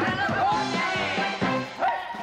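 A Broadway pit orchestra plays an up-tempo dance section, with a steady beat of low notes. Short voiced cries ring out over it near the start and again near the end.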